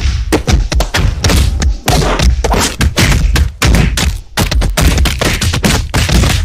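A loud, dense barrage of heavy thuds and bangs, several a second, with strong bass throughout.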